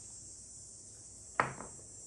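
A single sharp clack of a small ceramic dish being set down on a hard surface about one and a half seconds in, dying away quickly, over faint steady room hiss.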